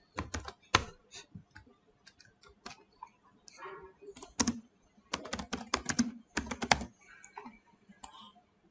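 Computer keyboard typing: irregular keystrokes, then quick runs of rapid key presses in the second half.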